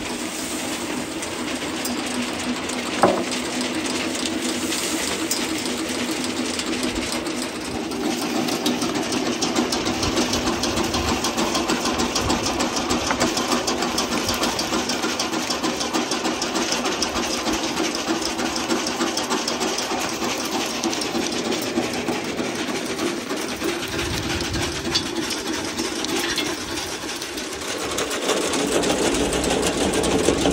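Homemade soil sifter running: a perforated steel screen shaken by a flywheel-and-crank drive, with a fast, steady mechanical rattle as soil is sifted across it. There is one sharp clank about three seconds in.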